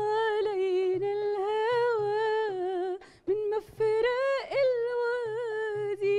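A woman humming a song melody without words, in long, wavering held notes with a short break about three seconds in, over soft darbuka drum beats.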